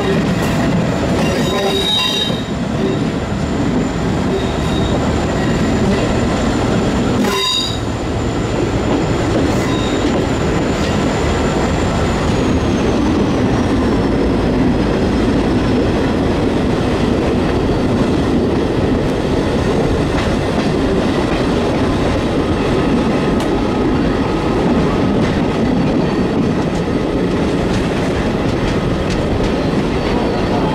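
Passenger train running along the line, heard from an open coach window: a steady rumble of wheels on rail with clicks over the rail joints. A thin, high wheel squeal slides down in pitch about halfway through.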